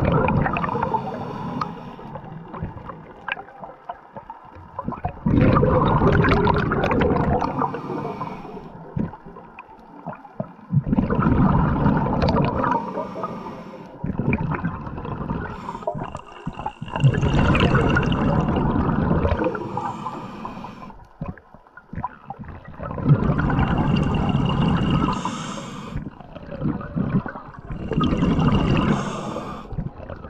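A diver breathing, heard through an underwater camera: a loud rush of breath and bubbles about every five to six seconds, with quieter water noise between.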